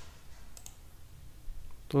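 A few faint clicks of a computer mouse scroll wheel as a web page is scrolled, over a low steady hum; a man's voice starts right at the end.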